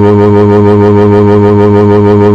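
A loud, steady, low-pitched buzzing tone, rich in overtones, held flat after a quick upward slide at its start.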